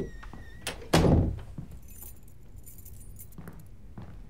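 A front door being pushed shut, closing with one heavy thud about a second in, followed by a light metallic jingle.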